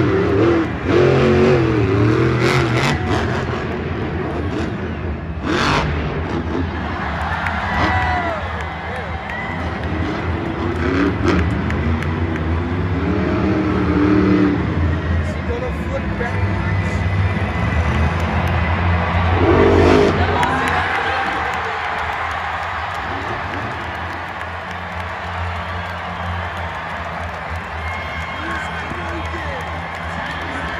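Monster truck supercharged V8 engines running on a stadium dirt floor, revving up and down several times, with the loudest rev about two-thirds of the way through. Arena PA sound and crowd noise underneath.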